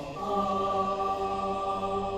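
Mixed choir of men and women singing one long sustained chord, which begins a moment in and is held steady.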